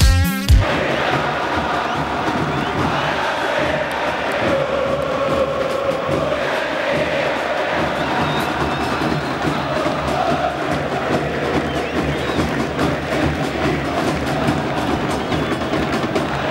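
A large football stadium crowd singing and chanting together, a steady dense mass of voices. A music track cuts off about half a second in.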